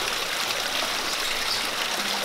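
Water running steadily from a small stone garden fountain into its pool.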